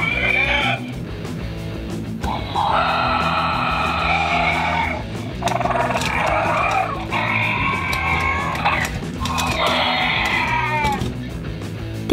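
A series of about five growling, screeching dinosaur roars, each a second or two long and the last falling in pitch, over steady background music.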